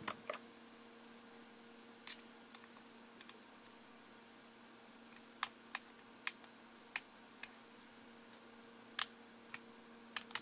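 Faint scattered plastic clicks and taps as a power cord's plug is fitted into the socket on the base of a TomTom GPS unit, over a steady faint hum.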